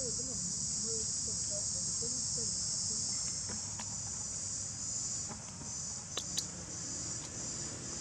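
Steady high-pitched insect chorus, with a couple of short sharp clicks about six seconds in.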